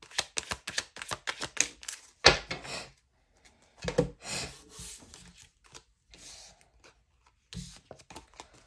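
A deck of tarot cards shuffled by hand, a quick run of crisp clicks, then a single loud knock about two seconds in. After it come softer swishes of cards being dealt and slid onto a wooden table.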